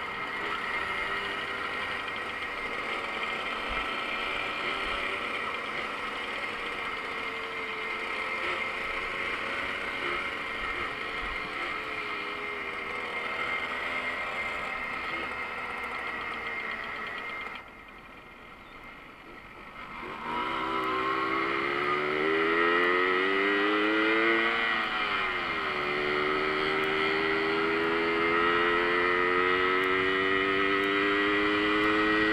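Small two-stroke moped engine heard from the rider's seat with wind rush, running steadily. About two-thirds of the way through it goes quiet for a couple of seconds, then comes back louder with its pitch climbing, dipping briefly and climbing again as it gathers speed.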